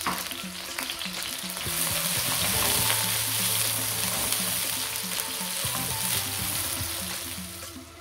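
Sliced spring onions sizzling as they fry in hot rapeseed oil in a wok, stirred with a spatula. The sizzle grows louder about two seconds in and dies down just before the end.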